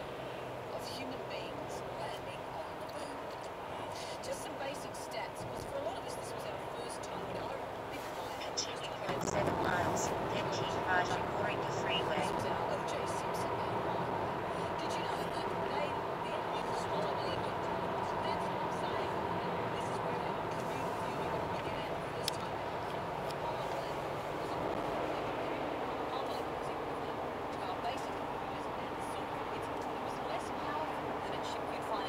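Inside a moving car: steady road and engine noise with an indistinct voice talking underneath. The sound grows louder about nine seconds in.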